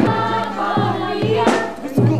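Music with a group of voices singing over steady low notes, playing as dance accompaniment.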